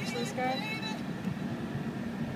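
Steady low drone of a car's engine and road noise heard inside the moving car's cabin, with a person's voice briefly over it in the first second.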